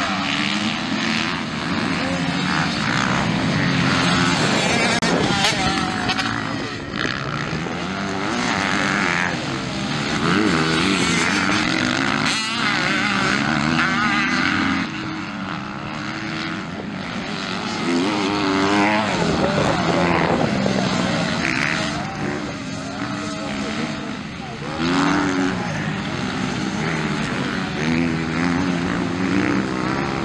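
Several motocross dirt bikes racing, their engines revving up and down again and again as the riders accelerate, shift and brake through the turns.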